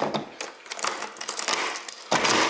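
Irregular metallic clicking and jangling of a front door's lock and lever handle being worked as the door is unlocked and opened.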